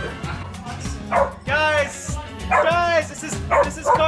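Three long howling calls that rise and fall in pitch, each about half a second long and about a second apart, over background music.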